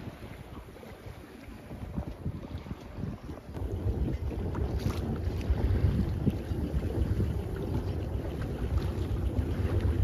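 Wind buffeting the microphone on a moving boat, a low rumble that grows clearly louder about three and a half seconds in.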